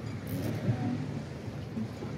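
Wind buffeting a phone's microphone out on open water, a steady noisy rush without speech.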